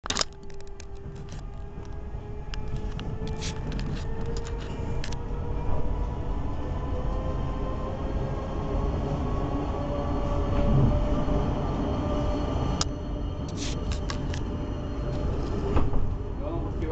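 Electric passenger train pulling out and accelerating: a steady low rumble of wheels on rail under an electric motor whine that rises slowly in pitch, with bursts of sharp clicks over the rails in the first few seconds and again near the end.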